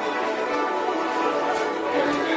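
Instrumental music with several held notes sounding together at a steady level.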